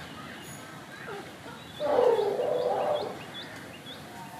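Outdoor ambience with a small bird calling in a run of short, quick, rising chirps. About two seconds in, a louder, rougher sound lasting about a second sits under the chirps.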